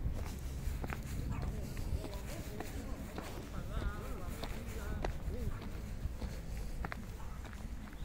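Footsteps of a person walking on gritty ground, with irregular scuffs and clicks over a low rumble of handling noise from the hand-held phone.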